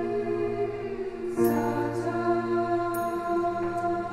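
Women's choir singing slow, sustained chords, moving to a new chord about one and a half seconds in.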